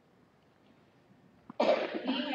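Near silence, then a person coughs once about a second and a half in, a sudden noisy burst.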